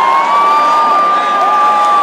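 Stadium crowd cheering, with a nearby fan holding one long, high-pitched whoop and a second, lower voice joining the shout about three-quarters of the way in.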